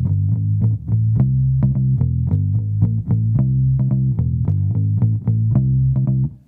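1974 Höfner 500/1 violin bass, a hollow-body electric bass, played through a Peavey amplifier set flat: a steady run of plucked notes, about four a second, with a plunky, clear tone.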